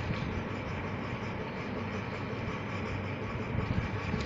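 A steady low mechanical hum with a hiss over it, even throughout.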